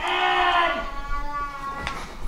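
A drawn-out wordless vocal sound from a person, lasting under a second and falling slightly in pitch, followed by quieter murmurs and a sharp click near the end.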